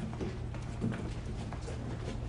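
Footsteps of several people walking on a hard floor: irregular heel strikes, over a steady low hum.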